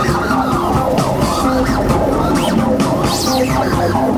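Live electronic music played on a modular synthesizer rig: a dense, loud mix of short pitched notes with rising and falling synth glides.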